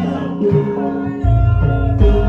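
Javanese gamelan music accompanying a traditional masked dance: several sustained pitched tones, joined a little past halfway by a deep low sound that stays loud.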